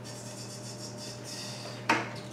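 Faint rubbing and handling of small kitchen containers being taken from a cabinet, with a sharp click near the end, over a low steady hum.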